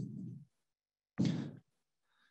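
A man's short, audible breath about a second in, between stretches of dead silence. The tail of his speech fades out at the start.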